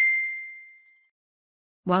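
A single bright ding, a bell-like chime that rings out and fades away within about a second. It is the notification sound effect that goes with an animated subscribe button being clicked.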